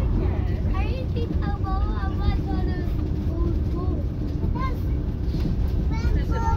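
Leyland Leopard PSU3R coach's diesel engine running, a steady low rumble heard from inside the saloon, under the chatter of passengers.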